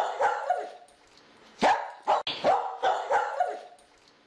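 A dog barking in a rapid series of short barks, a few at the start, a pause of about a second, then about six more in quick succession.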